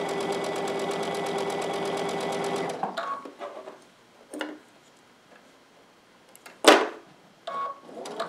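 Electric sewing machine stitching a fabric hem at a fast, even rhythm, stopping about three seconds in. A few handling clicks follow, then a sharp click near the end, with brief beeps after the stop and again just before the stitching resumes.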